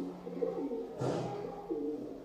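Pigeons cooing in short low calls, with a brief scratchy sound about a second in.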